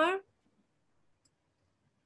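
The tail of a spoken question in the first quarter second, then near silence: room tone over a video call.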